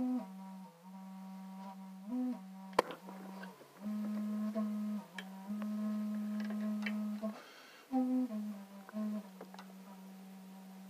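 A person humming a slow tune in long held notes, with a sharp click of a tool on metal about three seconds in.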